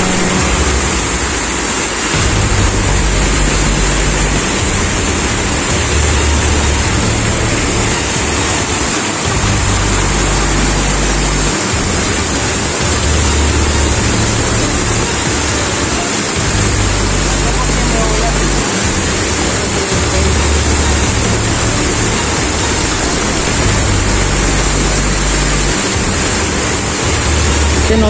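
Waterfall pouring into a rock pool, a loud, steady rush of water. Underneath it, a low bassline of background music repeats in a cycle of about seven seconds.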